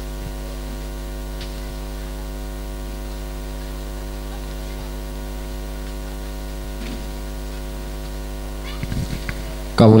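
Steady electrical mains hum, a low buzz with a ladder of overtones that holds at one level throughout. A man's voice starts right at the end.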